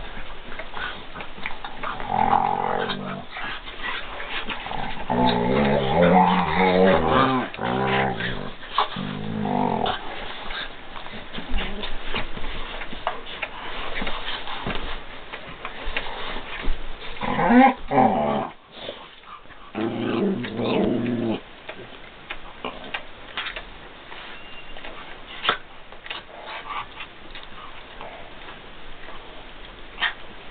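Dogs growling in play while they wrestle, in several rough bouts through the first two-thirds, with scuffling and clicks of paws and claws between; the last third is quieter scuffling.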